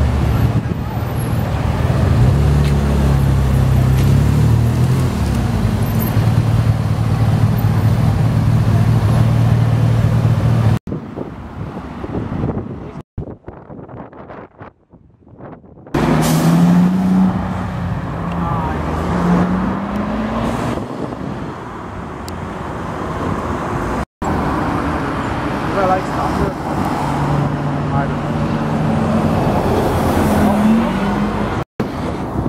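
Street traffic. For about the first ten seconds a BMW F10 M5's twin-turbo V8 runs at low revs as the car creeps past, a deep, steady engine note. After a quieter stretch, a bus and cars pull away with rising engine notes.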